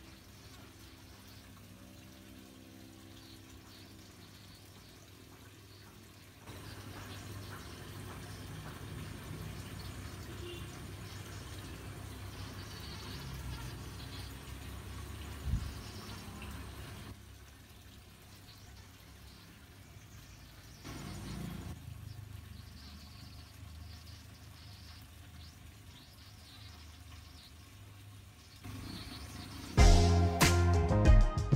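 Faint outdoor ambience: a low, even hiss and hum that shifts in level several times, with a faint droning tone in the first few seconds.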